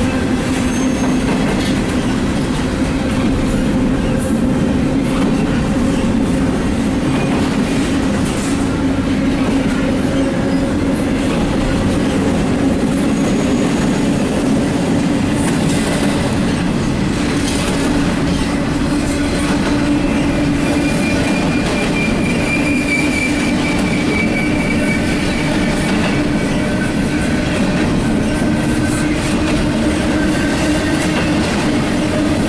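CSX double-stack intermodal well cars rolling past at steady speed, a loud continuous run of steel wheels on rail with a steady low hum. A faint high wheel squeal sounds in the second half.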